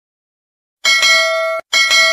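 Notification-bell sound effect on a subscribe-button animation: a bright bell ding struck twice, about a second in and again just under a second later, the second one ringing on and fading.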